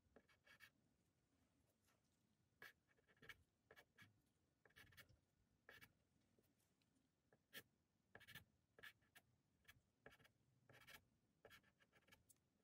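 Soft pastel stick stroking across non-sanded paper: faint, short scratchy strokes at irregular intervals, several in quick succession in the second half.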